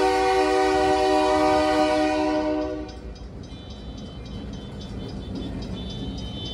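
Diesel locomotive's multi-chime air horn sounding one long, steady blast that cuts off about three seconds in. After it stops, the locomotive's rumble is heard as it passes close by.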